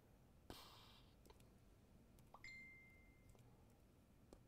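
Near silence with a few faint computer keyboard keystrokes, and a short faint high tone about halfway through that fades out within a second.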